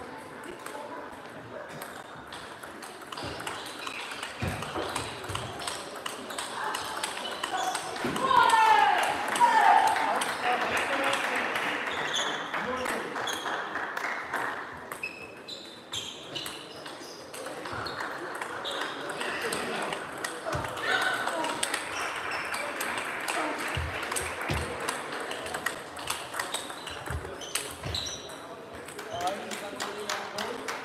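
Table tennis ball clicking off bats and table in rallies, the sharp ticks echoing in a large sports hall over a hubbub of voices from other tables. About eight seconds in comes the loudest sound, a loud pitched cry that falls, twice.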